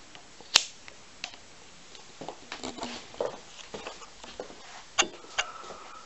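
Handling noise from a camera being taken off its tripod and moved by hand: a sharp click about half a second in, then scattered light knocks, clicks and rustles, with two more clicks near the end.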